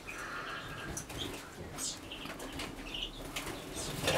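Small aviary finches fluttering their wings faintly, with a few short, high chirps.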